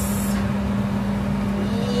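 A steady low hum with one constant pitch and a rumble beneath it, running evenly without change.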